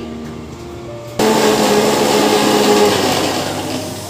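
Electric mixer grinder starting abruptly about a second in and running steadily with a motor hum, grinding the coriander, peanut, green chilli and ginger chutney; it eases off near the end.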